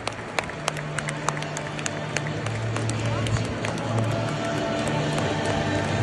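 Stadium crowd clapping, with scattered sharp claps close by. Public-address music plays underneath, its low bass notes coming in about half a second in and growing louder.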